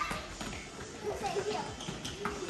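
Several children running on a hard tiled floor in a large hall, with many quick footfalls and children's voices calling out.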